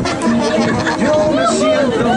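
Several people chatting over music playing in the background.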